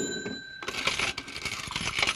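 A short bright metallic ring, then coins clinking and clattering for about a second and a half.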